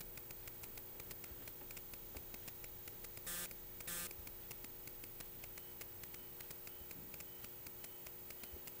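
Faint, steady electrical hum with light, rapid ticking under it, and two brief hissing noises about three and four seconds in.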